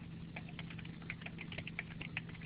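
Faint computer keyboard typing: soft, irregular key clicks over a steady low hum.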